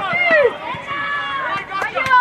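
Several high-pitched voices shouting excitedly at once, with long drawn-out cries rising and falling, as a football attack breaks toward goal.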